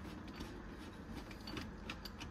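Faint light clicks and rubbing of plastic being turned by hand as a white plastic thermal actuator is unscrewed from an underfloor heating manifold valve.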